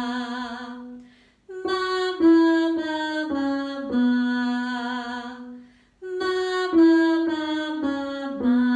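A woman sings a stepwise descending scale on an open "ma", doubled by a digital piano, as a pitch ear-training exercise. There are two runs, each stepping down and ending on a longer held note with vibrato, separated by short breaks.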